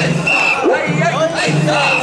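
Group of mikoshi bearers chanting a short, rhythmic, repeated call like "oisa" as they carry the portable shrine, many voices overlapping. Short, steady, high-pitched tones recur through the chant.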